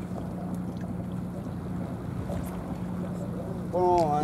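Steady low hum of a running motor under a haze of outdoor wind and water noise. A man's voice starts near the end.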